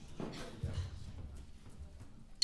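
Quiet knocks and a few low thumps in a hall: a short knock, then low thuds about half a second to a second in and again near the end.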